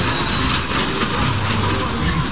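Loud funfair ambience: a steady mechanical rumble and hiss of running fairground rides.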